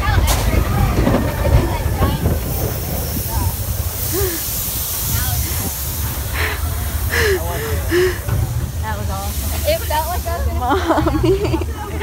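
Roller coaster train running at speed in the dark: a steady rush of wind and the low rumble of the cars on the track, with short bursts of riders' voices breaking through.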